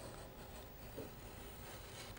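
Faint scratching of a sharp snap-off craft knife drawn lightly through packing tape on watercolour paper, over quiet room tone.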